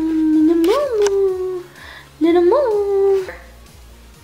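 Small dog howling in long drawn-out notes, each swelling up in pitch and sinking back: one howl carries on until about a second and a half in, and a second starts just after two seconds and breaks off short of the end.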